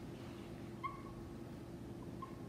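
Whiteboard marker squeaking once, short and high, as it is drawn across the board, over a steady low hum.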